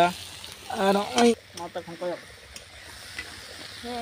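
Vegetables frying in a small iron karahi, with a steady sizzle and a metal spatula stirring and scraping against the pan. A voice speaks briefly at the start and again about a second in.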